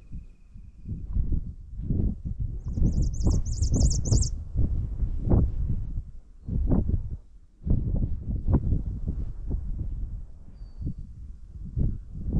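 Wind buffeting the microphone in uneven gusts, the loudest sound throughout. About two and a half seconds in, a small songbird gives a quick high-pitched trill of about ten rapid repeated notes lasting under two seconds.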